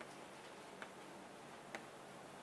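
Chalk tapping on a blackboard while writing: a few faint, short sharp taps, the loudest near the end, over a steady room hiss.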